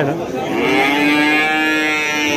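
One long, steady call from a farm animal, lasting about two seconds.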